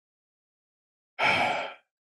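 Dead silence for over a second, then a man's short, audible breath between phrases of speech, fading out quickly.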